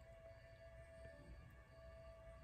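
Near silence, with a faint bed of ambient background music of steady held tones and no beat.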